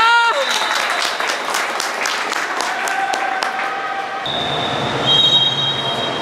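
A shout from spectators, then a run of handclaps for about three seconds, echoing in an indoor pool hall. About four seconds in, a referee's whistle sounds, a steady high blast held for more than a second.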